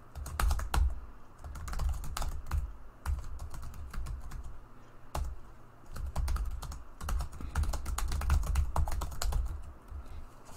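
Typing on a computer keyboard: an uneven run of key clicks in bursts, with short pauses between words.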